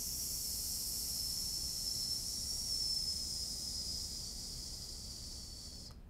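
A woman slowly letting her breath out in one long, steady hiss that fades slightly near the end. This is a controlled exhalation from the diaphragm in a singing breath-control exercise.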